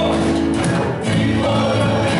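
Live worship band and a group of singers performing a gospel worship song, with acoustic guitars, keyboard, drum kit and electric bass under the voices.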